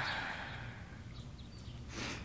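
Quiet outdoor background noise, a low steady hiss and rumble, with a few faint high bird chirps about half a second to a second in.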